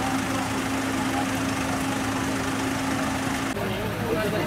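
A vehicle engine idling steadily with a constant hum, which cuts off abruptly about three and a half seconds in.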